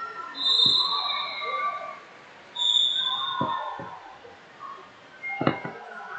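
Background noise of a busy wrestling hall: distant chatter, two short whistle blasts from other mats, one about half a second in and one about two and a half seconds in, and scattered thuds, the sharpest near the end.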